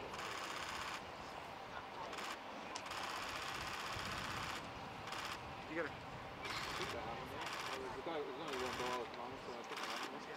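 Distant voices of players talking and calling across an open training pitch, broken by several short bursts of hiss-like noise.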